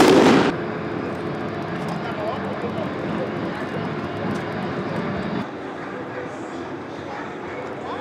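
A loud explosive bang about half a second long right at the start, followed by street noise with voices; the background thins after about five and a half seconds.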